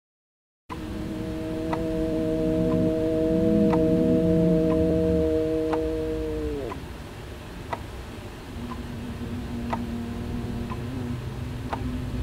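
A steady droning chord of several tones starts just under a second in, then slides down in pitch and dies away about halfway through, like something powering down. A quieter single low hum follows, with scattered faint ticks throughout.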